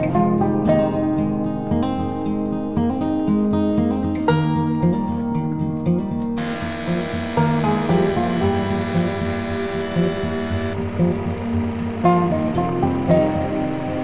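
Background music throughout; about halfway through, the sound of a chainsaw cutting wood comes in under it for a few seconds, then continues more faintly.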